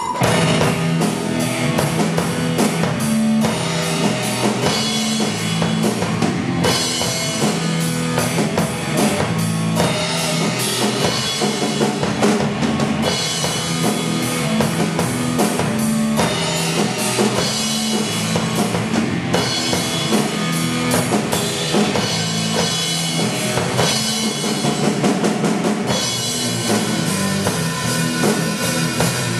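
Acoustic drum kit playing a steady rock groove of kick, snare and cymbals, over a rock backing track with a pitched bass line that changes every few seconds.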